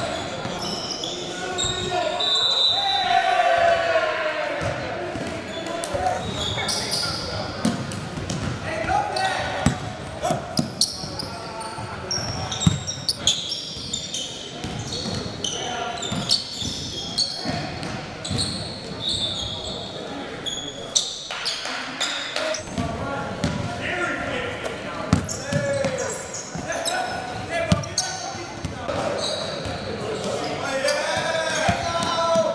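Live sound of a basketball game echoing in a large gym: a ball bouncing on the hardwood court again and again, with sneakers squeaking and players and onlookers shouting.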